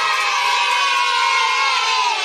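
A crowd of children cheering together, many voices held at once in one steady cheer.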